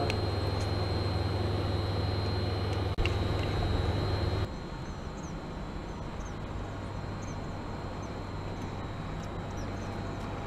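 A steady low hum, which drops abruptly to a quieter, thinner background about four and a half seconds in, with a few faint high chirps after the drop.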